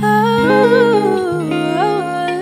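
A woman's voice singing a wordless, winding vocal run that falls and then climbs again near the end, over sustained electric guitar chords.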